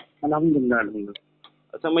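A man talking over a phone call, the voice thin and narrow as a phone line makes it. Two short faint clicks come in a brief pause past the middle.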